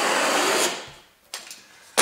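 A blade cutting through a 1.8 mm underlay mat of mineral-filled bio-polyurethane in one steady drawn stroke, which fades out about a second in, followed by a sharp click at the very end.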